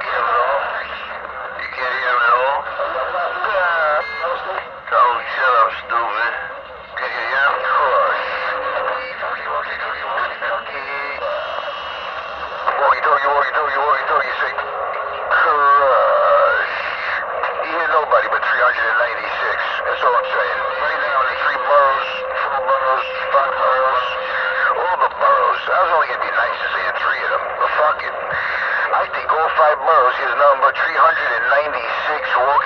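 CB radio chatter: voices coming through a radio's speaker, thin and narrow-sounding over a noise floor.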